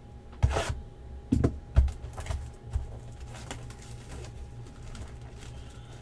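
Shrink wrap being slit with a knife and pulled off a sealed trading-card box: a handful of short crinkles and rips in the first three and a half seconds, over a low steady hum.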